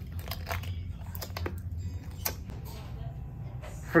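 Scattered small crinkles and clicks, the sound of handling, over a low steady hum.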